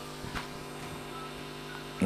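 Steady low electrical hum with a faint hiss, and one faint click about a third of a second in.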